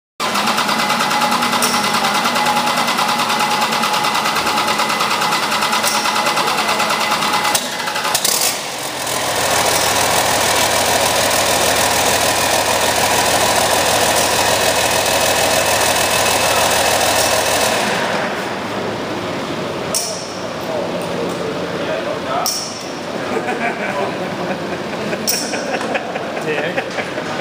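Large diesel engine running loudly on a test stand, its sound changing about eight seconds in and dropping to a lower level about eighteen seconds in, followed by a few sharp clicks.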